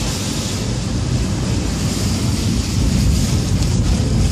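Car driving on a wet road, heard from inside the cabin: steady road and tyre noise with a low engine hum.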